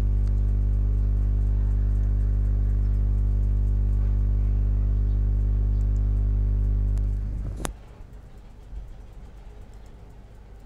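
A loud, steady low electrical hum with a buzz, dying away about seven seconds in. A single sharp click follows.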